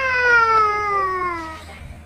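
A small child's long, drawn-out cry of pain: one wail that falls steadily in pitch and fades out about a second and a half in.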